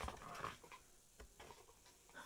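Near silence: a soft click at the start, faint rustling for about half a second, then a few light ticks, like small handling noises.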